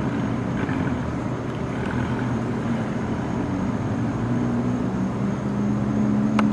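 A motor running steadily with a low, pitched hum whose tone shifts in the second half.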